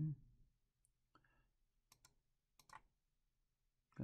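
A few faint computer mouse clicks, roughly a second apart, as labels are placed one after another.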